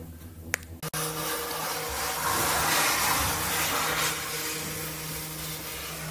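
Gondola cabin moving through a lift station with its door open: a steady mechanical rush and rumble from the station machinery, starting about a second in after a couple of sharp clicks and loudest around the middle.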